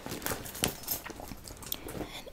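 Soft quilted leather handbag being opened by hand: irregular crinkling and small clicks as the leather flap is lifted.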